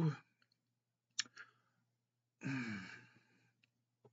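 A man's quiet pause for thought: a small mouth click about a second in, then a short breathy sigh that falls in pitch a little before three seconds.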